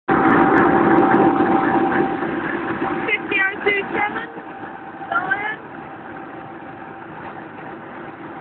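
A railway locomotive running with a steady hum, loudest in the first few seconds and then easing off, with brief voices over it partway through.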